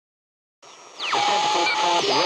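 Radio static, as in an intro sound effect: a loud hiss comes in about a second in, with a whistle that sweeps down in pitch and then holds a steady tone, over faint wavering sounds.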